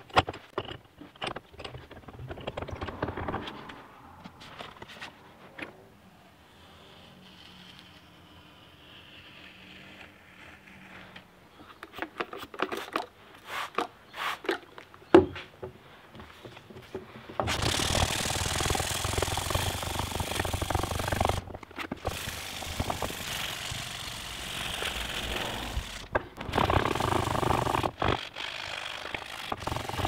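Hand-sanding a resin-cast banksia pod knife handle with abrasive paper. Irregular scraping strokes and a few sharp taps come first; from about halfway on there is a continuous sanding rasp with a few brief breaks.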